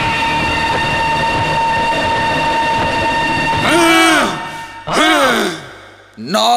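Film background score holding a steady, droning chord, then near the end two loud drawn-out vocal cries, each rising briefly and then falling in pitch, about a second apart.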